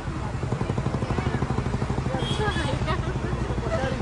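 Low rumble of an open-top tour bus riding through traffic, pulsing rapidly and evenly, with faint voices in the background.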